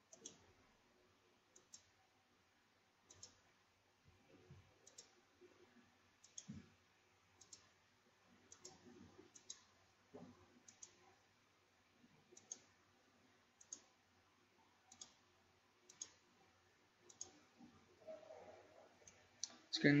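Faint single computer-mouse clicks, one every second or so, stepping a network simulation forward one event at a time.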